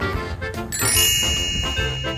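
A bright chime sound effect strikes about two-thirds of a second in and rings on, over background music.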